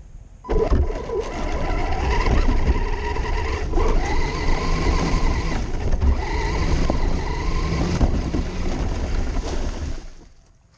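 Electric RC truck driving, heard from a camera riding on its body: the motor and gears whine, rising and falling in pitch with the throttle, over a loud rumble and rattle of the chassis on rough ground. It starts suddenly about half a second in and stops at the end.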